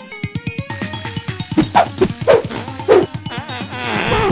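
Background music with a steady beat, over which a dog gives a few short, sharp yips around the middle, followed near the end by a wavering, drawn-out whine.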